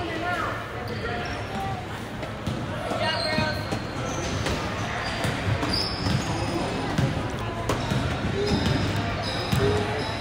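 Basketball bouncing on a hardwood gym floor during play, with players' and spectators' voices in the hall.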